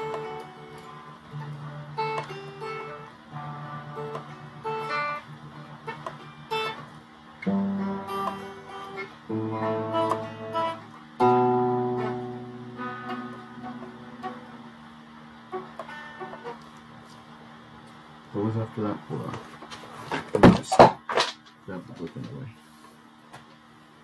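Electric guitar, a Stratocaster-style solid body played through an amplifier, picking a slow melody of single ringing notes and light chords. Near the end, a few loud sharp hits sound out.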